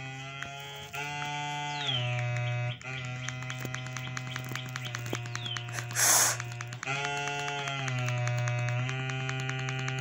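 A slow, gentle tune of long held synthesizer-like notes played through a television's speakers, the pitch stepping to a new note every second or so. Two short falling whistles sound over it, and a short, loud hiss comes about six seconds in.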